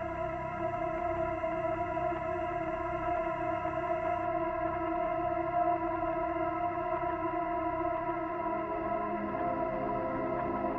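Ambient music generated by the Cinescapes Pro Kontakt instrument: a layered chord held steady, with a soft repeating figure low down. New lower notes come in near the end.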